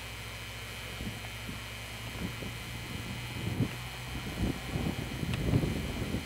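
Wind buffeting the camcorder microphone: irregular low rumbles that grow stronger toward the end, over a steady low hum and hiss.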